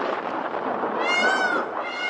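Opening sound effects of a DJ remix track: a noisy hiss, a short wavering pitched sound about halfway through, then a steady synth tone coming in near the end.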